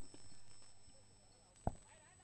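Quiet open-air background with a faint, steady high-pitched tone and a single short tap near the end.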